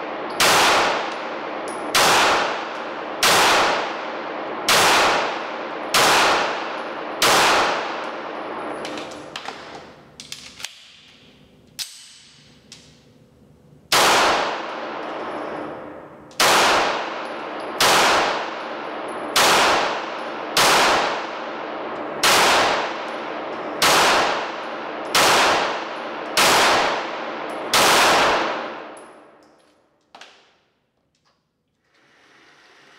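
EAA Witness pistol fired in slow single shots, about one every 1.3 seconds. Each report rings and echoes off the concrete walls of an indoor range. Six shots are followed by a pause of about six seconds with a few small clicks, then ten more shots.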